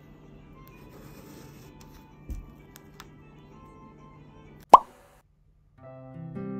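Faint pen writing on a spiral notepad with a few light taps, then a single loud, short pop that rises in pitch, like a cartoon 'plop'. After a moment's silence, gentle plucked harp-and-piano music begins near the end.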